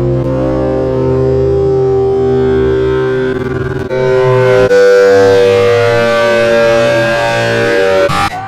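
Heavily distorted, time-stretched audio sample: sustained droning pitched tones held like a frozen chord, briefly wavering and then shifting to a new held chord about four seconds in.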